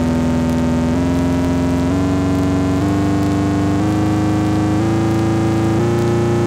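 Korg Monologue analogue synthesizer starting suddenly on a held, overtone-rich note, then stepping up in pitch in small steps about once a second.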